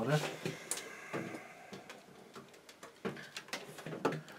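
Scattered light clicks and knocks of handling: a PC power supply and its loose bundle of cables being moved about on a tabletop.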